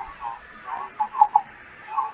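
A person's voice, thin and muffled, coming in short broken snatches over the video-call audio.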